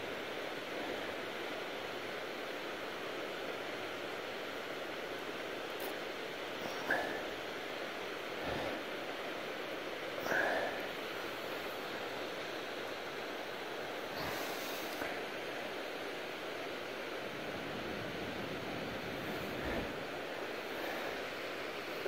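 Steady, even rush of fast-flowing creek water in the canyon below. A few short, slightly louder sounds stand out about seven, ten and fourteen seconds in.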